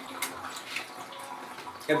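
Faint, steady trickle of liquid in a small tiled room, with a couple of light clicks.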